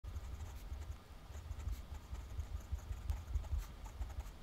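Steel 1.1 stub nib of a Lamy Al-Star fountain pen scratching softly across grid paper as letters are written, in short strokes with small gaps between them. A low rumble sits underneath.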